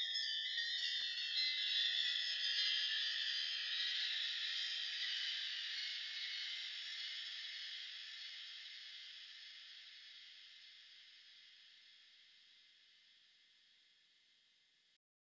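A chimes sample time-stretched far out to sound slow and moody, played alone: a sustained, high, shimmering wash of metallic tones that fades away steadily.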